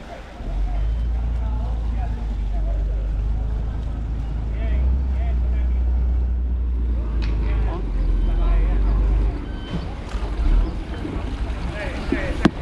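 A small fishing boat's engine running with a low rumble as the boat comes alongside, dropping away about nine seconds in.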